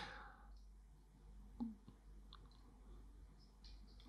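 Near silence: room tone, with one brief faint click about a second and a half in and a few fainter ticks later, from small objects being handled.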